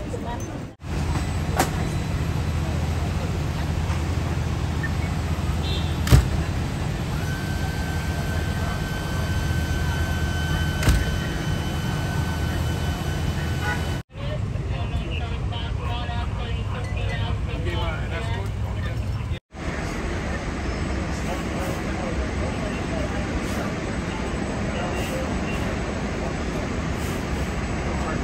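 Busy street ambience of idling emergency vehicles: a steady low engine rumble under indistinct voices, with a brief steady tone in the middle. The sound cuts out for an instant twice, about halfway through and again some five seconds later.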